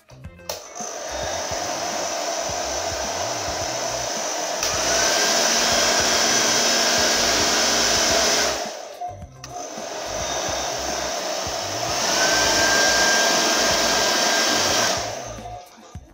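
Handheld hair dryer running as it blows onto a T-shirt wrapped over hair. It grows louder about five seconds in, drops away briefly just before the halfway point, then runs again, louder once more, and stops shortly before the end.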